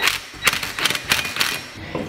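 Cordless impact wrench hammering in several short bursts on a differential's pinion nut, drawing the new pinion and crush sleeve into place until the nut bites, before the sleeve takes any preload.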